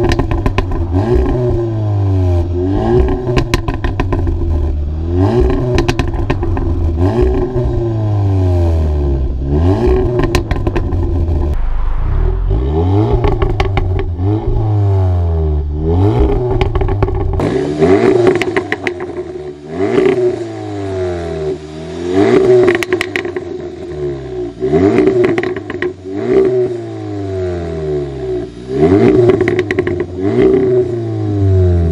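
Resonator-deleted Audi S3 8V facelift's 2.0 TFSI turbo four-cylinder being revved repeatedly while stationary, in Dynamic mode. Each blip rises and falls about every two seconds, with sharp crackles on several of the comedowns. It is heard close up at the exhaust tips.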